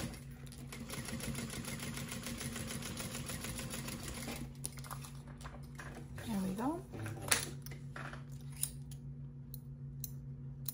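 Juki industrial sewing machine top-stitching through vinyl at a steady run for roughly the first four and a half seconds, then stopping. Afterwards the vinyl panel is handled, with a couple of sharp clicks, over the machine motor's steady low hum.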